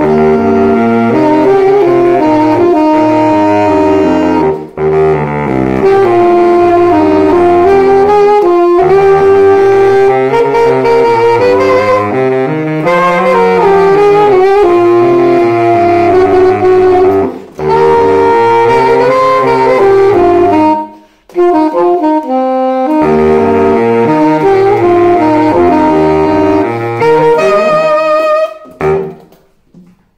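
An alto saxophone and a baritone saxophone playing a duet, the baritone's low notes under the alto's melody. They pause briefly between phrases a few times and stop about a second before the end.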